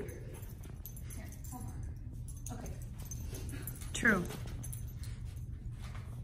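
A single short vocal cry about four seconds in, falling quickly in pitch, over a steady low hum.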